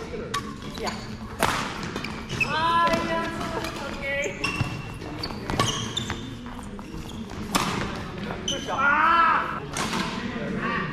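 Badminton rackets striking a shuttlecock in a doubles rally: sharp, crisp pops every second or two, ringing briefly in the hall.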